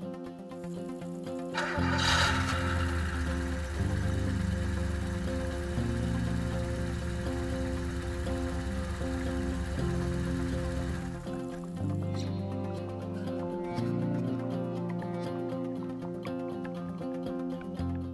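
Background instrumental music with a bass line that moves in steps, and a bright hit about two seconds in.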